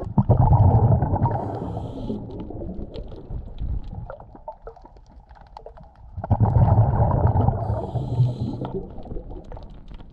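Underwater sound of a scuba diver breathing out through a regulator: two bursts of rumbling, bubbling noise, the first at once and the second about six seconds later, each starting suddenly and fading over about three seconds. Faint scattered clicks run between them.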